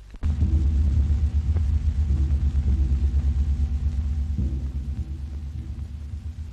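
A loud, deep rumbling drone with a rapid throbbing pulse, starting abruptly just after the start and shifting slightly about four and a half seconds in.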